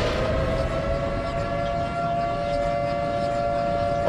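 A steady, siren-like wail from the animation's soundtrack. It is a tone with several overtones that settles onto one pitch and holds it, over a low rumble.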